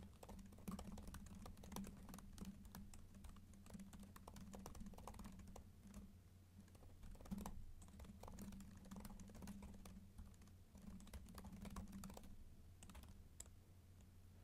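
Faint typing on a computer keyboard: quick runs of keystrokes broken by short pauses.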